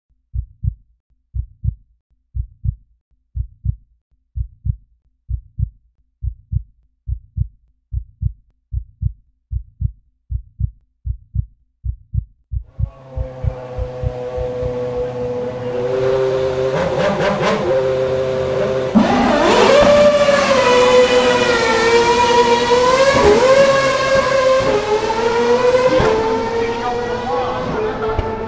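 Heartbeat sound, low double thumps about once a second that gradually speed up, gives way about halfway through to a racing car engine that swells in level and pitch, gets louder, and revs with several up-and-down swoops in pitch.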